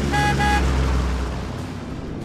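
Short musical logo sting: two quick, bright, horn-like notes over a low bass swell that fades out over about a second and a half.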